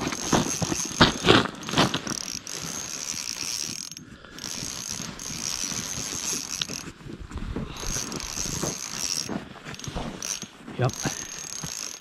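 Small spinning reel on an ice-fishing jigging rod being cranked under the load of a large fish being brought up slowly: its gears click and whir in spells, with a high thin whine that stops during short pauses in the cranking.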